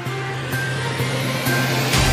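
Electronic news-bulletin intro theme building up, with a beat about twice a second and a rising whoosh near the end as it swells in loudness.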